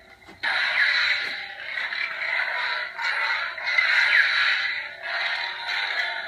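Hasbro Black Series Kylo Ren Force FX toy lightsaber playing its blade sound effects through its small built-in speaker as it is swung. A hum starts suddenly about half a second in and rises and falls in three long surges.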